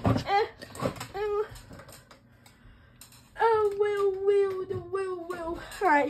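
A boy's wordless voice: short vocal sounds in the first second or so, then after a brief lull one long held note lasting about two seconds that dips slightly at the end.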